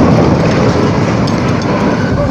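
Loud rumbling and rattling clatter of a toppled container-port gantry crane's steel frame crashing to the ground and settling, easing slightly near the end.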